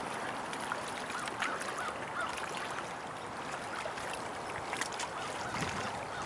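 Steady noise of wind and choppy river water at the shore, with a few faint, short bird calls in the first couple of seconds.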